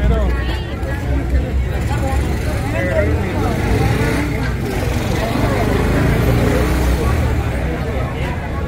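Chatter of several people nearby over a steady low rumble of street traffic.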